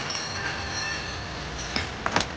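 A small metal ornament being handled: soft clinking over a steady low hiss, with a faint high ringing early on and a sharp click near the end.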